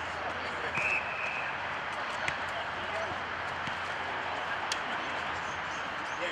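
Indistinct, distant voices of players and onlookers at a football ground over a steady outdoor hiss, with a brief high tone about a second in and a few sharp ticks.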